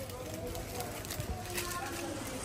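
Indistinct chatter of other shoppers in a shop, with a few scattered clicks and knocks.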